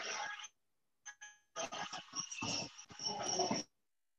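Broken-up video-call audio over a weak connection: short bursts of rough noise separated by stretches of dead silence where the sound drops out entirely, with a brief electronic blip about a second in.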